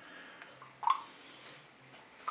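A spoonful of tomato paste being scraped off onto spaghetti in a multicooker bowl: one brief soft sound a little under a second in.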